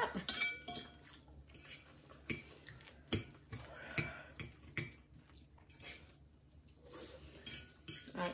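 Metal forks clinking and scraping against ceramic dinner plates as two people eat, a handful of sharp separate clinks roughly a second apart.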